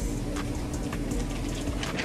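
Steady low hum of kitchen equipment, with a few faint light clicks and rustles as a sheet of sandwich wrapping paper is laid out and smoothed on a cutting board.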